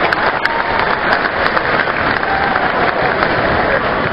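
A large arena crowd applauding steadily, with some voices calling out through the clapping.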